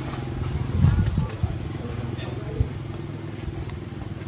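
An engine idling steadily, with a brief louder low rumble about a second in and a sharp knock a little past halfway.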